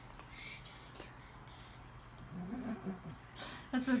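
A quiet room, then from about halfway a woman's soft, wordless voice and laughter, turning into speech near the end.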